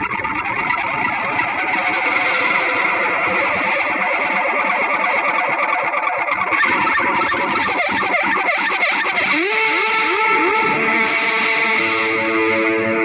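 Progressive rock music led by electric guitar, the band playing a dense instrumental passage. About nine seconds in, a run of quick upward slides leads into held notes.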